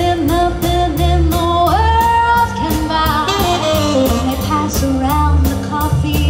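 Live band with a female singer: a sung melody with held, wavering notes over bass and a drum kit keeping a steady cymbal beat.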